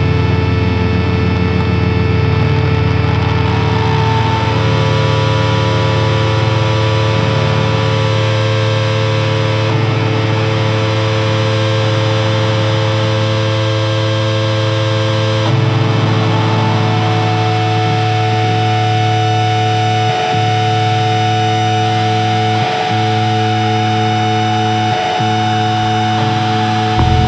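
Grunge/noise-rock music: heavily distorted electric guitar run through effects, holding droning notes with no clear drumbeat. A new high held note comes in about two-thirds of the way through, and the sound briefly drops out three times near the end.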